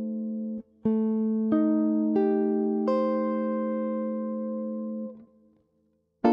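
Clean-toned Duesenberg electric guitar playing jazz comping chords: a held chord stops short about half a second in, then four chords are struck in quick succession, each changing the voicing, and the last rings for about two seconds before it is damped, leaving a brief silence near the end.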